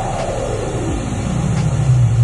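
Pink noise test signal played through a studio monitor for measuring the room's response: a steady, even hiss with a strong low rumble.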